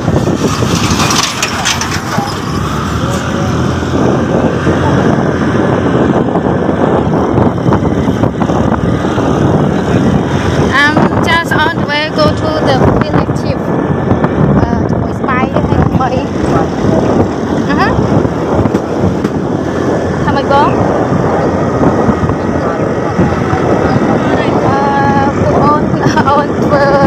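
A motorbike running along a dirt road, heard as a loud, steady wash of wind on the microphone mixed with engine and road noise.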